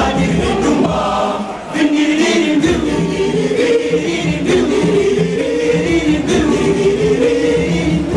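Boys' school choir singing, with a brief dip in the singing about two seconds in before it carries on in sustained lines.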